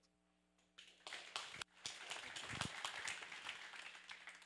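A small audience applauding. A few separate claps about a second in, then fuller clapping that tails off near the end.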